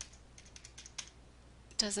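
Computer keyboard keys tapped in a quick run of light clicks during the first second, typing a hex colour code into a text field; a woman's voice starts near the end.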